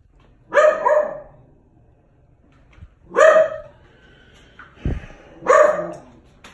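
A dog barking: two quick barks about half a second in, a single bark about three seconds in, and another near the end.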